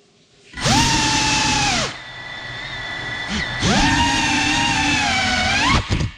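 Ducted brushless motors and propellers of a GEPRC Cinelog 35 cinewhoop drone spooling up from the floor twice. A steady high whine holds for about a second and drops back to a quieter idle. It then spools up again for about two seconds, rising in pitch just before it cuts off.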